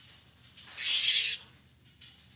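A flying fox giving one harsh, hissing screech about half a second long, a little under a second in.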